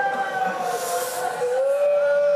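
A long wailing cry of grief from a mourner, held on one pitch that sags slightly, then stepping to a lower pitch about halfway through.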